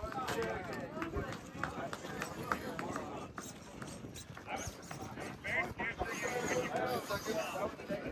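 Indistinct voices of people talking, with scattered light knocks and clicks throughout.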